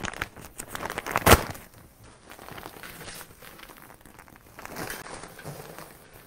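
A bag of potting soil crinkling and rustling as the soil is poured out of it into a large ceramic pot, with one sharp knock about a second in.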